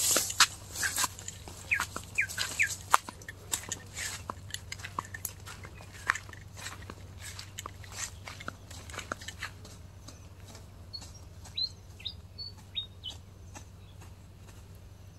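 Short bird chirps in two brief groups, one early and one near the end, over a run of irregular sharp clicks and crackles that thin out in the second half.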